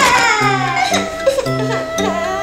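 A young girl's wail of dismay, its pitch falling over about a second, over background music.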